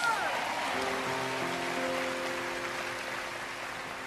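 Background music: a sustained chord of several notes held steady, fading slightly toward the end, over a soft hiss of room noise.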